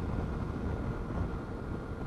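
Yamaha Tracer 900 motorcycle cruising at steady speed: wind rush over the helmet microphone with a low engine drone underneath, an even noise that neither rises nor falls.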